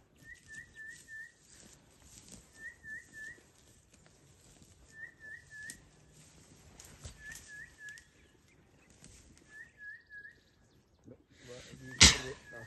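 A bird singing: short phrases of three or four quick upslurred whistles, repeated about every two and a half seconds, over faint rustling. A sudden louder sound comes at the very end.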